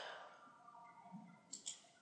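Near silence, with two faint clicks about one and a half seconds in: a computer mouse being clicked.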